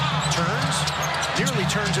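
Basketball bouncing and thudding on a hardwood court during live play, a few sharp knocks over a steady arena crowd murmur.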